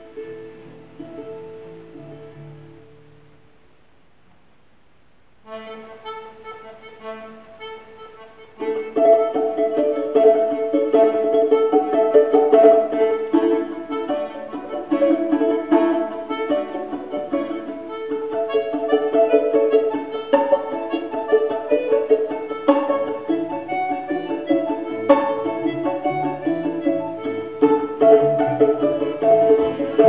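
A Russian folk trio of balalaika-family plucked strings, bayan (button accordion) and contrabass balalaika plays an arranged old Russian bagpipe tune. Plucked melody notes run over a steady held drone in imitation of a bagpipe. It opens softly with a brief pause, the drone comes back about five seconds in, and the full trio enters louder about three seconds later.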